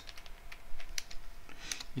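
Computer keyboard typing: a handful of separate, irregularly spaced keystrokes entering a short expression.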